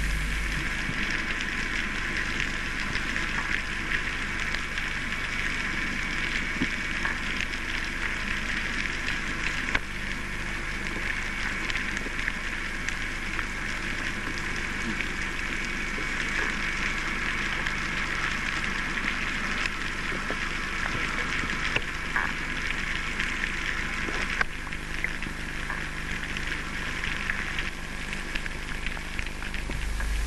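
Underwater ambience picked up by a diving camera: a steady hiss flecked with many small clicks.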